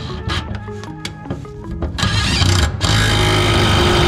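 Cordless impact driver running on a bolt under the car, starting about two seconds in and going in two bursts with a short break between, over background music.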